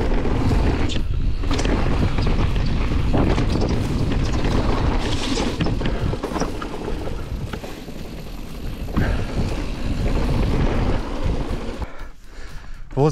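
Mountain bike riding fast down a dirt forest trail: wind buffeting the microphone over the rumble of tyres on the ground, with frequent clicks and rattles from the bike over roots and bumps. The noise is loudest in the first half and eases somewhat later.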